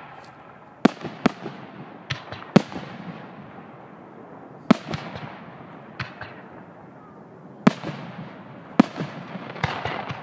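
Aerial fireworks shells bursting: about ten sharp bangs at irregular intervals, some in quick pairs, each followed by a fading echo, with a quick run of smaller pops near the end.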